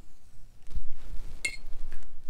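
A short, ringing clink about one and a half seconds in, with a faint click shortly before it: a paintbrush knocking against a hard container between strokes.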